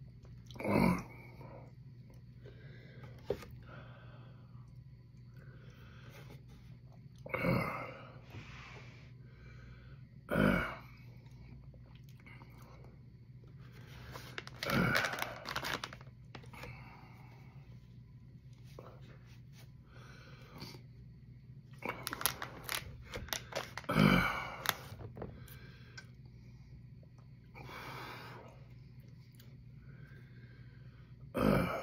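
A man's sharp breaths, sniffs and gasps through a hot-pepper burn, his nose running. They come in about half a dozen short bursts with quiet gaps between, over a steady low hum.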